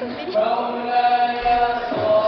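Nasheed singing: a voice holds one long, steady note after a short melodic turn at the start.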